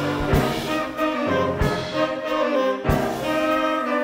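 Brass band playing a Middle Eastern–flavoured pop tune: trumpets and saxophones holding a chord over a drum kit, with sharp drum hits about every second and a quarter.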